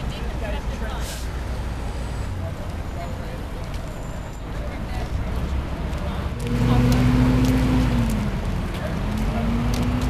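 City traffic noise, with a large vehicle's engine drone growing loud a little past the middle, holding one pitch, then dipping and rising again near the end.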